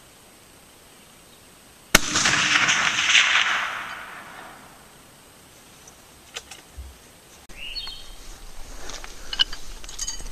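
A single shot from a Howa 1500 bolt-action rifle in .30-06 about two seconds in, its report rolling and echoing for about two seconds as it fades. A few faint clicks follow later.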